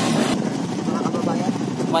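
Honda TMX single-cylinder motorcycle engine running under a tricycle sidecar, with road noise, heard from on board; the sound changes abruptly about a third of a second in.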